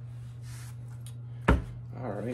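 A tarot card deck set down on a table with one sharp thump about one and a half seconds in, after faint rustling of card handling, over a steady low hum.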